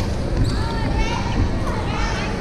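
Badminton players' shoes squeaking on a wooden sports-hall floor in short, sharp squeaks, with one racket hit on the shuttlecock about half a second in, all echoing in a large hall.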